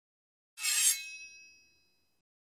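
A bright chime-like clink about half a second in, a short shimmering hit that leaves a few high ringing tones fading away over about a second: a title-reveal sound effect.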